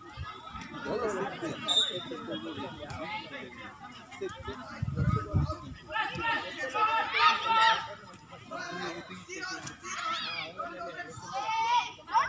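Indistinct shouts and chatter from children and people on the sideline at a youth football game, with a louder stretch of calling about six to eight seconds in.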